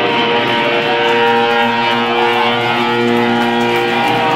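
Live band music led by loud electric guitar, playing long held chords that change every second or two, with no break.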